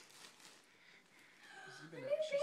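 Near silence: faint rustling of cellophane gift wrapping as a present is unwrapped, with a faint voice near the end.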